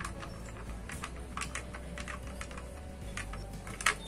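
Light, irregular clicks and taps of small screws and a plastic CPU-cooler retention bracket being worked loose from a motherboard by hand, with a sharper pair of clicks near the end.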